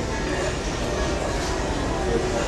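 Steady low rumble with an even hiss of background noise, with no distinct events.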